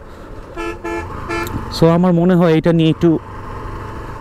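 Motorcycle horn giving three short toots in quick succession, each at one steady pitch, over the low, steady running of the motorcycle's engine.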